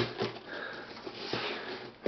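Faint scratchy rustling as hands work at the packing tape on a cardboard shipping box, with a couple of light taps.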